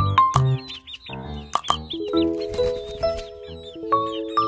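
Background music with held notes, over which lavender Ameraucana chicks peep repeatedly in short, high chirps.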